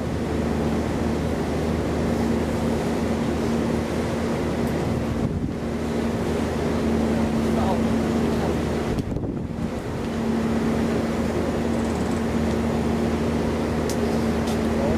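Tour boat's engine running steadily with a low, even hum, over wind and water noise on the open deck.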